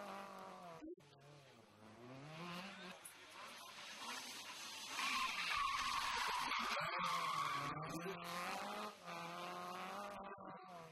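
Renault Clio rally car engine revving up and down as it is driven hard through a tight tarmac corner, with a long tyre squeal from about five to eight seconds in.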